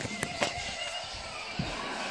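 Handling noise from a phone being moved about, with a few quick clicks in the first half-second and a soft thud about a second and a half in.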